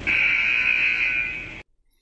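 Quiz countdown timer's time's-up buzzer sound effect: one steady buzz lasting about a second and a half, then cutting off suddenly.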